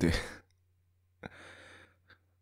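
A person's voice ending a word with a short laugh, then a breathy exhale like a sigh a little over a second later.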